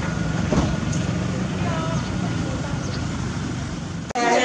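A steady low rumble of a running vehicle engine, with faint voices in the background.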